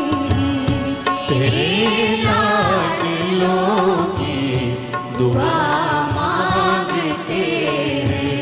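A woman sings a Hindi film song with vibrato, backed by a live orchestra with violins.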